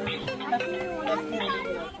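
Background music with steady held tones, mixed with the voices of people and children talking.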